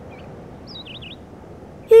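A few faint, short, high bird chirps about a second in, over a low steady outdoor hiss.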